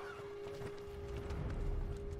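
Drama soundtrack playing: a steady held low note over a low rumble, with soft irregular knocks.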